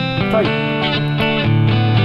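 A recorded guitar part playing back, sustained notes and chords changing every half second or so. It is heard through a channel EQ with the upper mids around 2.5 kHz boosted to bring out the guitar's edge.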